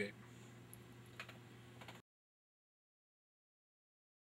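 Near silence: a faint steady hum with a couple of faint small clicks, then the sound cuts off completely about two seconds in.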